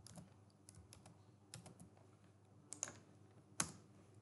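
Faint computer keyboard key presses: a scattering of light clicks, with two sharper ones toward the end.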